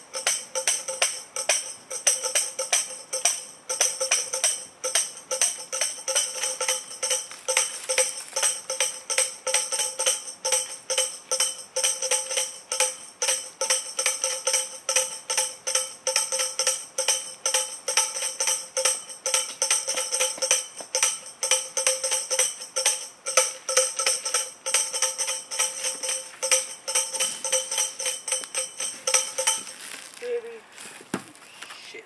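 A tambourine's metal jingles shaken in a steady, rapid rhythm, about two to three shakes a second, with a bright ringing shimmer.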